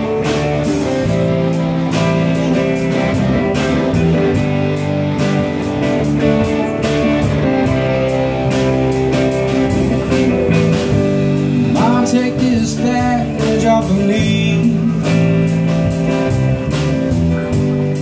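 Live rock band playing a slow blues-rock number: electric guitars, electric bass and a drum kit keeping a steady beat, with singing coming in over it in the second half.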